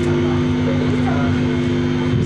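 Electric guitars holding a steady, droning chord through loud amplifiers over a low rumble, as played by a live hardcore band.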